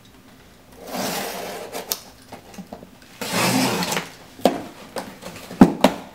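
Box cutter slicing along the packing tape of a cardboard box in two scraping strokes, followed by several sharp cardboard knocks as the flaps are pulled open, the loudest a little before the end.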